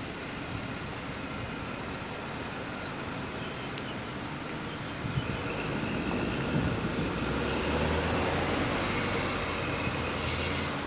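Road and engine noise of a moving vehicle, heard from inside it: a steady rush that grows louder about halfway through, with a low engine hum coming in later.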